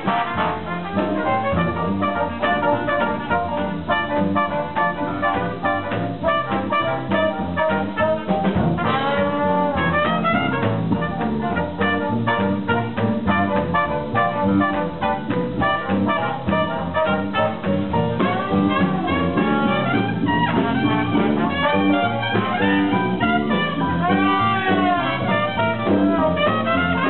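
Live Dixieland jazz band playing: trumpet, clarinet and trombone over upright bass and drums, with a steady beat. A few notes slide up and down.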